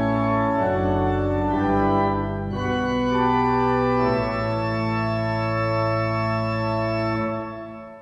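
Pipe organ played from the console: sustained chords shifting every second or so, then one long chord held from about four seconds in. Near the end the chord is released and its sound dies away in the reverberant room.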